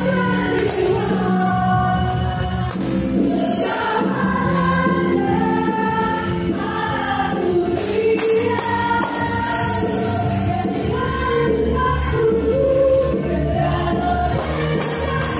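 Yamaha stage piano played with both hands: a slow worship song, with a melody of held notes over sustained chords.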